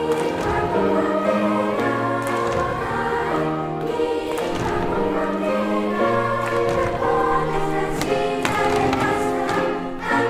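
A children's choir singing a song with sustained notes that change every second or so.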